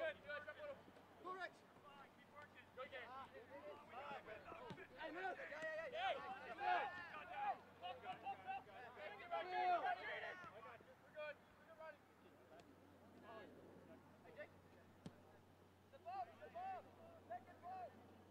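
Several voices calling and shouting across a soccer pitch during live play, overlapping, busiest in the middle and thinning out near the end. A steady low hum lies underneath.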